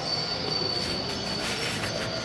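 A steady high-pitched squeal held for most of the two seconds, over a constant background din.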